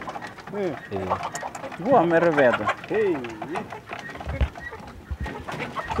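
Doves cooing in a coop: a few drawn-out coos that rise and fall in pitch. A low thud comes about four and a half seconds in.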